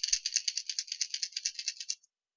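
Rattle balls inside a Strike Pro Montero 130 SP hard-plastic fishing wobbler, shaken rapidly by hand: a fast, even, bright rattle of about a dozen clicks a second that stops abruptly near the end. The tone is slightly ringing, because the balls have room to move inside the lure's body.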